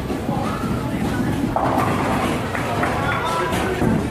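Bowling alley din: indistinct voices and chatter over a steady low rumble.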